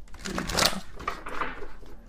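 Tarot cards being shuffled by hand: a burst of quick rustling in the first second, then a shorter, weaker patch.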